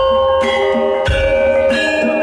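Javanese gamelan playing: bronze metallophones struck in a steady run of ringing, overlapping notes, with a deep low stroke at the start and again about a second in.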